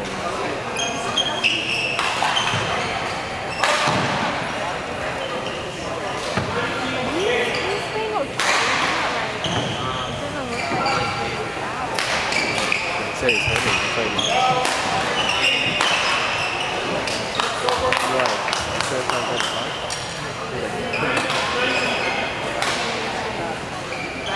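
Badminton rally in a large hall: racket strikes on the shuttlecock and footfalls on the court, coming as sharp, irregularly spaced cracks throughout, over a bed of spectator chatter.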